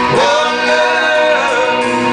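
Live band music: a man singing held, gliding notes over guitar, keyboard and drums.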